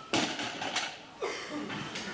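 A loaded deadlift barbell, about 295 lb of plates, set back down on the gym floor between reps. It lands with one impact just after the start, followed by a brief ring.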